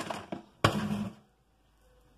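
A single sharp thump about two-thirds of a second in, as chunks of boiled cassava and green banana are dropped onto the chicken gizzards in the pot.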